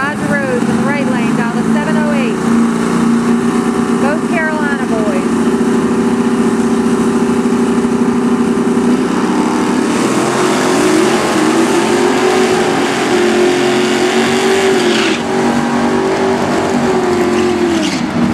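Two drag-racing cars held at steady revs on the starting line, then launching about ten seconds in and accelerating away down the strip, the engine pitch rising and dipping through the gear changes.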